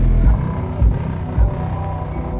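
Mercedes-Benz G-Class SUV engine running as it pulls away, with short surges of engine noise about a second in and again half a second later. A hip-hop track with sustained organ-like tones plays over it.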